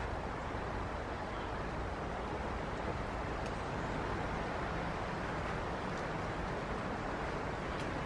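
Steady wind noise outdoors, an even hiss with low rumble and no distinct events.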